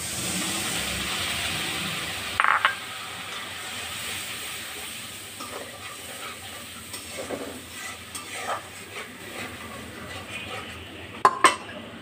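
A liquid poured into a hot steel karai sizzles for the first couple of seconds. A loud clank follows about two and a half seconds in, then a metal spoon scrapes and stirs in the pan, with two sharp clinks near the end.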